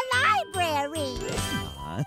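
The last line of a children's sing-along song: singers hold out the final word "library" over light instrumental backing, with a bright chiming tinkle in the accompaniment.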